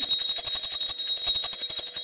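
A puja hand bell rung rapidly and without pause during the lamp aarti, giving a steady, high, shimmering ring made of fast clapper strokes.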